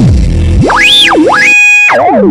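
Eurorack modular synthesizer playing a sweeping, siren-like tone: it dives low at the start, climbs high, dips and climbs again. Near the end it holds one steady high note for about half a second while the bass drops out.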